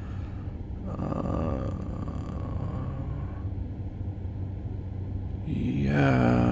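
Steady low rumble of a car driving on a highway, heard from inside the cabin: engine and tyre-on-road noise. A man's voice begins near the end.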